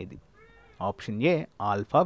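A faint, high, wavering cry during a short pause in a man's speech, followed by the man speaking with drawn-out syllables.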